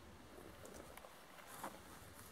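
Near silence: faint footsteps in grass and light rustling as a person walks close by, with one soft tap about a second and a half in.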